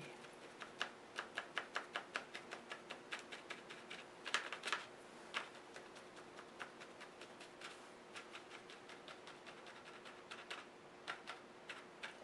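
Light, rapid tapping of a paintbrush dabbing paint onto the surface, about four or five taps a second, with a louder cluster of taps around four seconds in.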